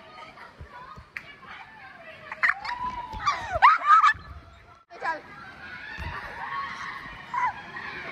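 Water running down a tube waterslide's flume, with long, wavering whooping yells from a rider in the tube about two to four seconds in.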